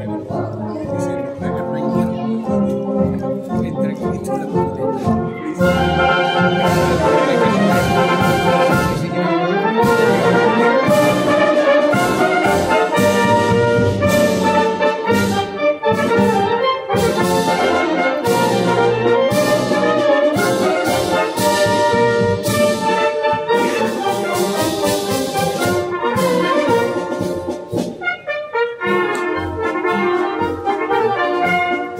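Military band playing a pasodoble militar, with trumpets and trombones carrying the tune. It starts softer and swells to the full band about five seconds in, then dips briefly near the end.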